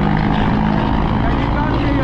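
Small motorcycle engine running steadily with street traffic around it, heard from the bike's pillion seat.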